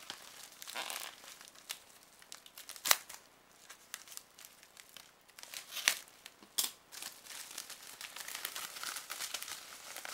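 A white plastic mail pouch being torn open and handled, crinkling and rustling, with a few sharp loud cracks, the loudest about three seconds in and another about six seconds in.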